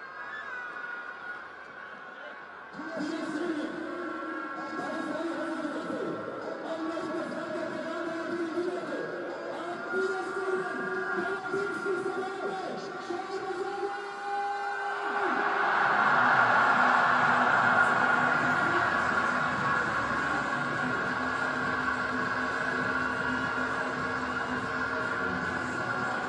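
Cricket stadium crowd: many voices chanting and singing, with steady horn tones held underneath. About fifteen seconds in it swells into a louder, denser crowd din.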